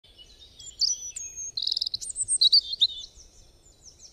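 Birds chirping and singing: short whistled notes, quick pitch glides and a rapid trill, busiest and loudest in the middle and fading out near the end.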